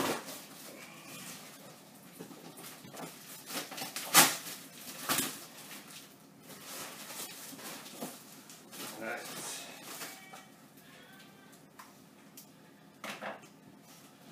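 Cardboard box being opened: packing tape cut and torn and cardboard flaps pulled back, a series of sharp rips and knocks over rustling, the loudest about four seconds in.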